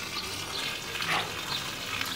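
Steady hiss of water spraying from a garden hose while plants are being watered.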